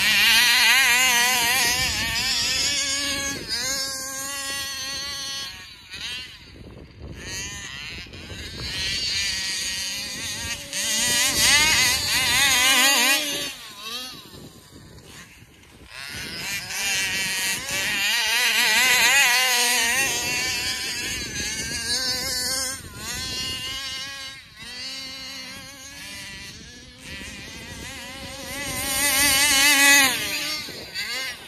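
Two-stroke engines of large-scale gas RC cars being driven hard, revving up and down as they pass. There are several loud passes, with quieter dips about a quarter, half and four-fifths of the way through.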